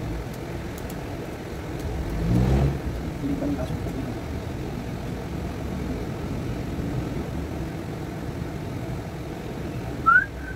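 A steady low rumble like a running engine, which swells louder for a moment about two and a half seconds in, rising in pitch.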